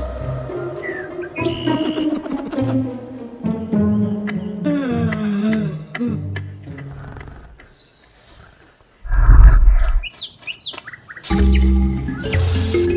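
Cartoon soundtrack: background music with comic sound effects and pitch glides. A short, loud, low hit comes about nine seconds in, followed by quick bird-like chirps, and the music swells back in near the end.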